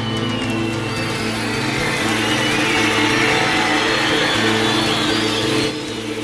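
Music with a repeating bass line, under the cheering and whistling of a football stadium crowd that swells to a peak about halfway through.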